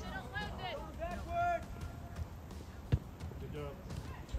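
Short shouted calls from youth soccer players across the field, then a single sharp thud of a soccer ball being kicked about three seconds in.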